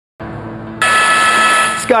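Electronic breaking-news sting: a low steady tone starts, then a bright, high, sustained chord of several tones comes in a little under a second in and cuts off just before a newsreader's voice begins.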